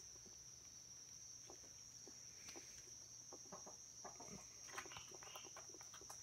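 Near silence under a steady high insect trill, with a few faint soft clucks from roosting chickens about four and a half to five seconds in.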